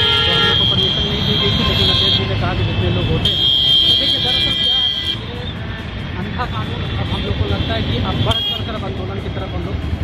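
Street traffic noise with a vehicle horn sounding two long, high, steady tones, the first about two seconds long and the second starting about three seconds in, over background chatter.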